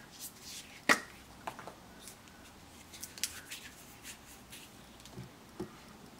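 Hands handling card stock and a glue stick on a cutting mat: a sharp click about a second in, then soft paper rustles and a few small taps.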